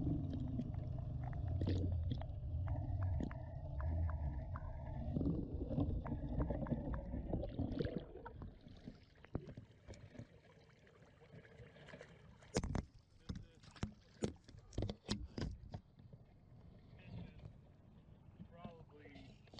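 Muffled underwater rumble as a wire crab pot with a camera on it is hauled up through the water. About eight seconds in it gives way to near quiet with a run of short sharp knocks and clicks as the pot comes out of the water and bumps against the boat's hull.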